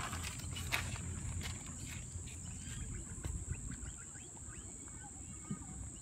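Kangaroo eating grain from an open hand, with a few short crunching clicks in the first second and a half, then quieter. A steady high-pitched hiss runs underneath.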